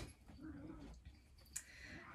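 Faint handling of a cotton shirt collar as it is turned right side out by hand, with one small click about one and a half seconds in.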